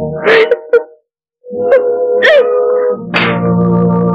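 Dramatic film score: sharp sudden stings in the first second, then a held chord with deep bass swelling in about three seconds in. Over it comes a woman's crying, rising wails.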